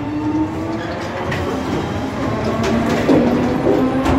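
Paris metro train running, the rumble of the moving carriage heard from inside with a steady whine that dips in pitch midway and rises again near the end.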